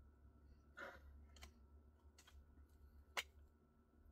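Near silence broken by a few faint clicks as the cap is taken off a perfume bottle. The sharpest click comes about three seconds in.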